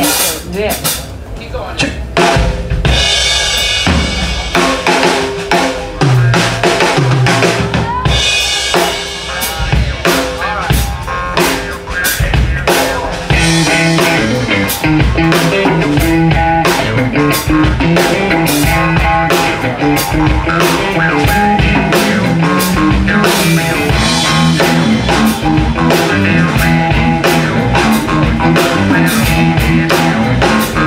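Live rock band music: the drum kit plays loud hits and fills with pauses for the first dozen seconds. The full band then comes in at a steady groove with bass and electric guitar.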